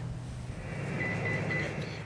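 Steady low drone of a patrol ship's engines, with a thin high tone heard briefly in the middle.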